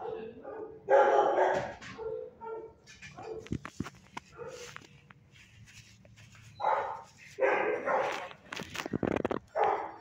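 A dog barking in short bursts, one loud bout about a second in and a run of barks over the last three seconds, with a few sharp clicks in between.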